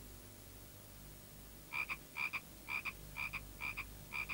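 Frog calling: a run of short croaks, about two a second, each a quick double note, starting a little under two seconds in.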